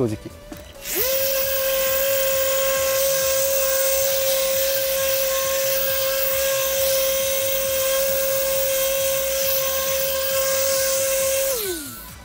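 5-inch electric polisher with a urethane buff running on a plastic headlight lens, giving a steady high whine. It spins up quickly about a second in and winds down, falling in pitch, just before the end.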